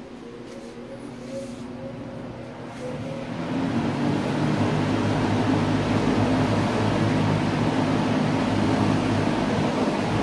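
Air King MR20F box fan with a Westinghouse motor starting up. The whir of the blades and the rush of air build over about four seconds, then run steadily with a low hum.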